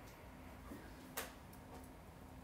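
Stylus tapping and scratching on a tablet screen while shading in a drawing: a few faint clicks, the sharpest a little past halfway.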